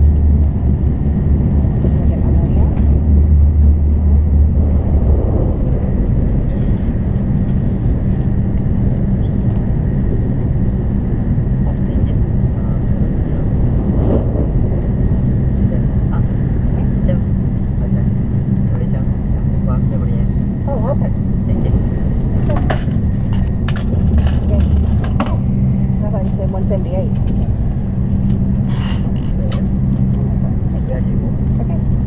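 Steady low rumble of a Shinkansen bullet train running, heard from inside the passenger car, with the deep drone swelling during the first few seconds and again briefly near the end. Quiet voices and small clicks and rattles from a purchase at a cart sit over it.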